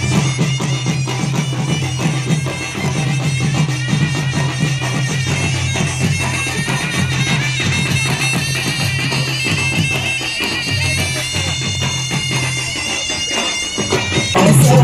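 Live folk music: a wind instrument plays a high melody over a steady low drone, with drums beating throughout.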